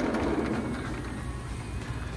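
Steady rain outdoors: an even hiss with a low rumble underneath, swelling slightly as it begins.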